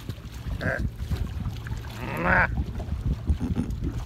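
Steady low rumble of a boat at sea with wind on the microphone, and a short voice sound about two seconds in.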